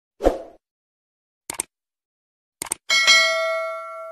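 Subscribe-button animation sound effect: a soft pop, then two pairs of mouse clicks, then a bright bell ding that rings out.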